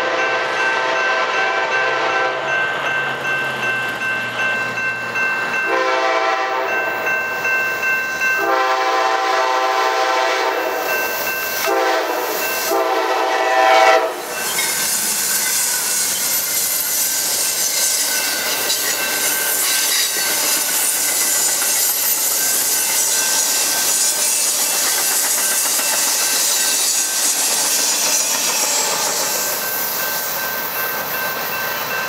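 Amtrak P42DC diesel locomotives sounding their multi-chime air horn in a series of blasts, long and short, as they approach the grade crossing. The last blast, about 14 s in, is the loudest and cuts off as the locomotive passes. After that come the rushing and clickety-clack of the stainless passenger cars rolling by, with a crossing bell ringing steadily underneath.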